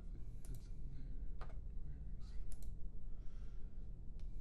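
About five sharp computer mouse clicks, two of them in quick pairs, over a steady low hum. A soft hiss comes about three seconds in.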